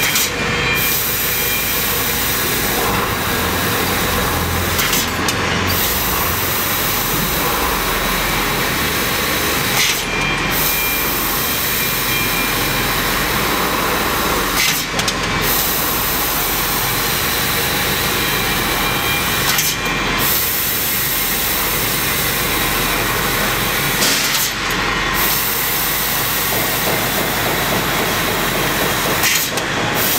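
Fiber laser cutting machine cutting sheet metal: a loud, steady hiss from the cutting head, broken about every five seconds by a brief drop in the high hiss.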